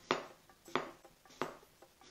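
Kitchen knife slicing through apple and striking a cutting board: three sharp taps, evenly spaced about two-thirds of a second apart.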